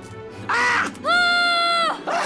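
A high-pitched creature voice from a fantasy film soundtrack: a short cry about half a second in, then one long, steady, shrill cry held for almost a second, over faint background music.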